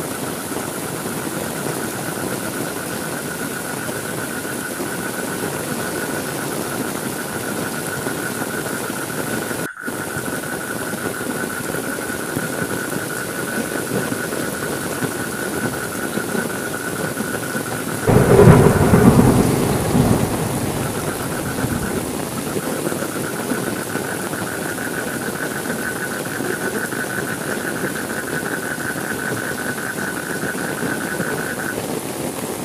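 Steady rain, with one loud thunderclap about eighteen seconds in that rumbles and dies away over about three seconds. A steady high-pitched tone sits under the rain.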